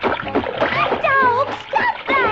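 Cartoon water-splash sound effect, with a character's voice calling out in sliding pitch in the second half.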